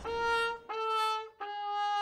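Short brass musical sting of three held notes, each a little lower than the one before. The first two last about half a second each, and the third is held long.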